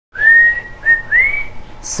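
A person whistling three notes: a long one sliding up, a short one, then a third that glides higher.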